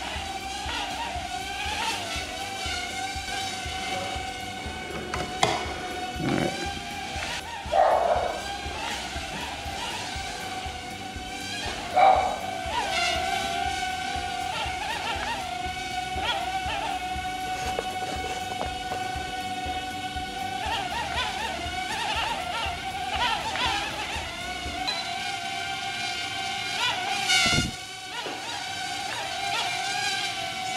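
Holy Stone HS190 micro quadcopter's tiny motors and propellers whining in flight. The pitch holds mostly steady, dipping and rising briefly a few times as the drone manoeuvres. There is a short knock near the end.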